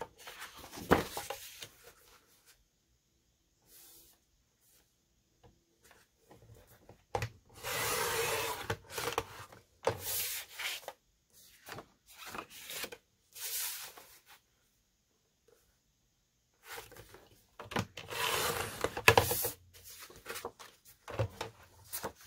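A sliding paper trimmer cutting manila folder card, heard as two cutting strokes of a second or two each. Between them come shorter rustles of the card being slid and repositioned on the trimmer base.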